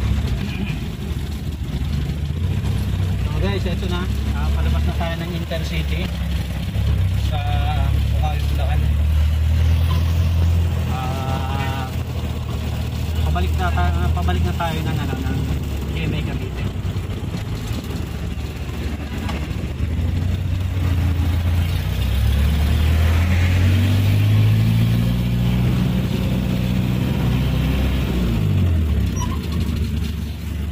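Engine of a loaded light truck heard from inside the cab, droning low while it drives. Near the end the engine revs up steadily for several seconds, then its pitch drops sharply.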